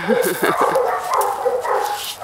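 Dog whining and yipping in a continuous stream of high, wavering calls.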